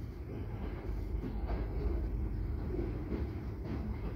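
Empty open-top coal wagons of a freight train rolling past: a steady low rumble of steel wheels on rail with a few clacks at rail joints, heard from behind a window.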